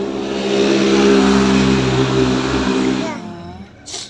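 A motor runs steadily with a loud rushing noise over it. The rushing builds during the first second, holds for about two more, then fades away.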